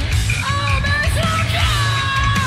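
Live rock band playing: a high-pitched lead vocal sings over drums, bass and guitars, the sung line coming in about half a second in and holding a long note near the end.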